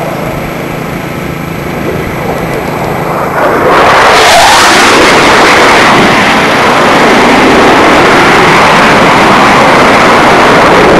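Jet engines of a B-2 Spirit bomber flying over. A moderate rumble jumps suddenly to a very loud, steady engine roar about three and a half seconds in and stays loud.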